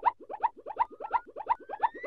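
Synthesized channel-intro sound effect: a fast, even run of short bouncy pitched blips, about eight a second, with a faint tone gliding upward near the end.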